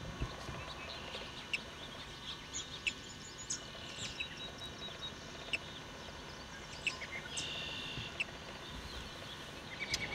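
Faint outdoor ambience with scattered short bird chirps and a couple of brief high trills.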